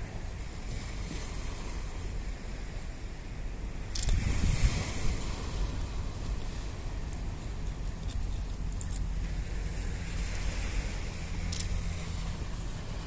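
Wind on the microphone over small waves washing onto a sandy shore, with a louder gust about four seconds in and a few short clicks.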